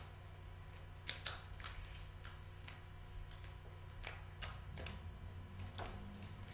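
Quiet room with a steady low hum and a scattering of faint clicks and taps, about ten in all, from papers and pens being handled at the meeting tables. The loudest come about a second in.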